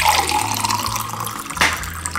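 Water poured from a filter jug into a drinking glass in a steady stream, with a short knock near the end.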